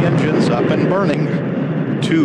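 Space shuttle main engines running in the seconds before liftoff: a loud, steady noise under the countdown voice.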